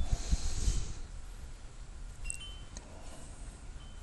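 A pause between spoken phrases: a soft breath in the first second, then low steady background noise with a few faint, very brief high-pitched tinkles.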